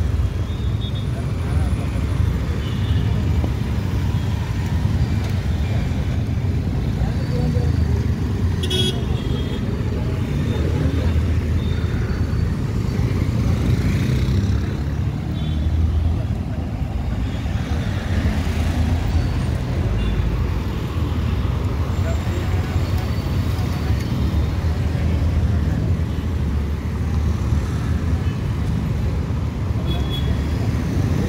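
Busy street traffic recorded from a moving motorcycle: a steady low rumble, with a few brief horn toots from nearby vehicles.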